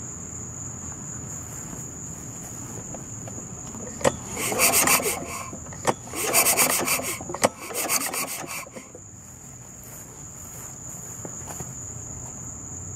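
Recoil starter rope on a Kawasaki 5 hp mower engine pulled slowly three times, each a rasping pull of about a second, turning the engine over by hand to check the freshly adjusted valves. Crickets chirp steadily throughout.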